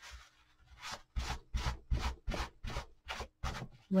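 Quick repeated wiping strokes of a paper towel across a decoupaged wooden sign, about three a second, starting about a second in: wet antique wax being wiped off the surface.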